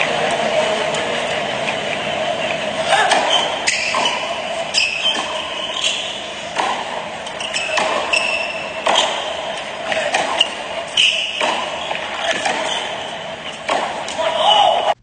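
Tennis ball struck by rackets and bouncing on a hard court during play, a dozen or so sharp hits at irregular spacing over a steady crowd murmur.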